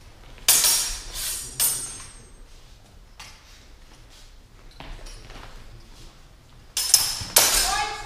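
Steel practice longswords clashing blade on blade in a sharp exchange, each clash ringing briefly: two clashes about half a second and a second and a half in, fainter knocks in the middle, and two more clashes near the end.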